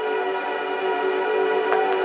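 Ambient background music: a steady held chord of several tones, without a beat.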